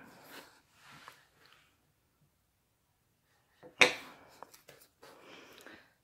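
Faint handling noise as a wood-burning pen and a wood slice are moved about on a glass-topped table, with one sharp knock about four seconds in and a few small ticks after it.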